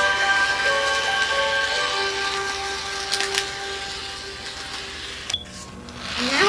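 Background music of held, sustained notes, fading down gradually, with a couple of faint clicks about three seconds in.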